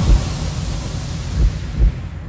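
Cinematic intro sound effect for an animated logo reveal: a sharp hit at the start, then a noisy low wash with two deep booms about a second and a half and just under two seconds in.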